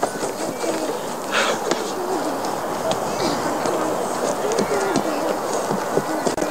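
Indistinct voices of children and onlookers calling out over a steady hiss, with a few short sharp taps.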